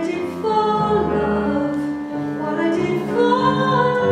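A woman sings a slow ballad solo, accompanied on a Kawai ES7 digital piano. She holds a long, high note near the end.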